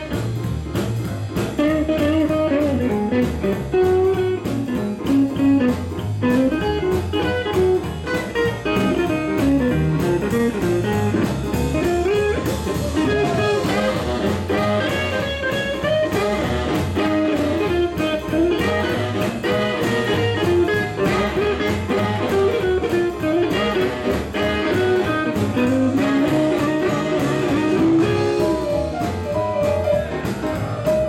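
Live swing band playing an instrumental passage, a hollow-body electric guitar taking the lead over upright bass and drums with a steady beat.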